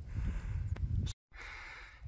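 Low wind rumble on the microphone outdoors, with a single faint click; the sound cuts out to silence for a moment about halfway through.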